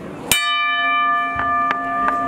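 Boxing ring bell struck once with a wooden mallet, then ringing on with several steady tones; a few fainter clicks come over the ringing.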